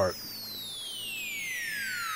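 A thin synthesizer tone sweeping steadily down in pitch, a slow falling whoosh with faint overtones and no beat under it.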